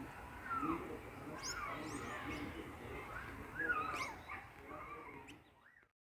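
Short, high animal calls, several gliding up or down in pitch, over faint outdoor background noise; the sound fades out just before the end.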